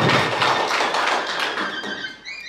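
Audience clapping: a dense patter of many hands that dies down near the end.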